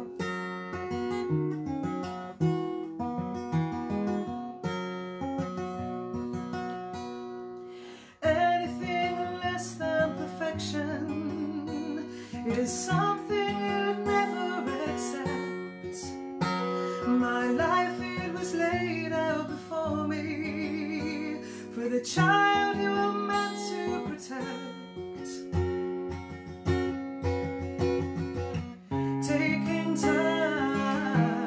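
Acoustic guitar strummed alone as a song's intro, then singing comes in about eight seconds in and carries on over the guitar chords.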